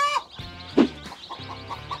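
Background music: a steady bass line under a quick, evenly repeating higher note.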